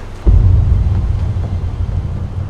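Trailer sound-design boom: a sudden deep hit about a quarter second in, then a low rumble that holds and slowly fades.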